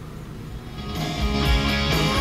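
Guitar-led music playing from the car's factory FM radio, fading in about a second in and growing louder as the volume knob is turned up.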